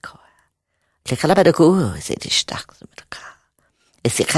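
A voice speaking a stream of non-word syllables, starting about a second in after a pause and stopping shortly before the end.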